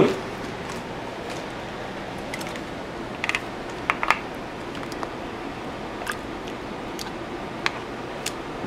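Metal spoon tapping and clinking against glass mason jars while salsa is spooned into them: a handful of light, scattered clicks and taps over a steady background hiss.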